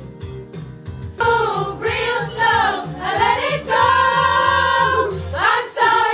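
A group of young men singing loudly together over pop backing music. The voices come in about a second in, hold one long note in the middle, then rise again near the end.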